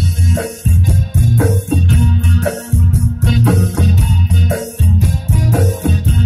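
Live band playing an instrumental passage through PA speakers: keyboard and guitar over drums and a heavy bass beat.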